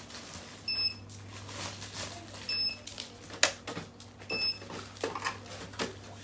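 Three short, identical electronic beeps about two seconds apart, over the crackle of plastic bags being handled, with one sharper crackle a little past halfway.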